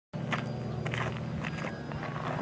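Several footsteps on gravel, over a steady low hum.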